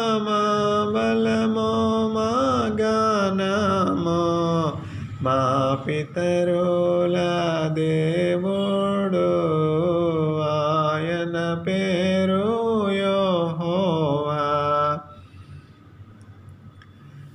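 A single man's voice singing or chanting a slow melody in long held notes that glide gently in pitch, with no words made out. It breaks off about a second before the end.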